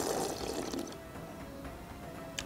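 A long slurp of broth sipped from a stainless steel bowl, fading out about a second in. Soft background music runs underneath.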